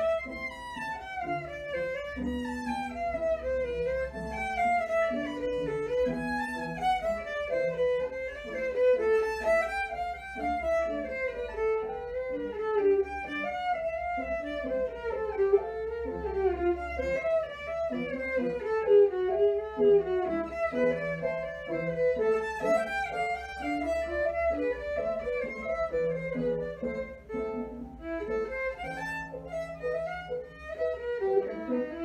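Violin played solo with the bow, in fast running passages of notes that climb and fall without a break.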